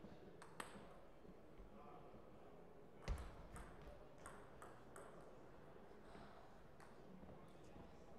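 Celluloid-style table tennis ball clicking off paddles and the table, a scattered series of faint sharp ticks, with a louder thud about three seconds in.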